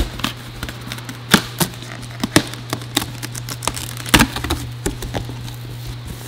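Cardboard shipping box being opened by hand: packing tape peeled off and the flaps pulled open, giving a run of sharp crackles and rips, loudest about four seconds in. Under it runs a steady low hum of shop fans and air-conditioning units.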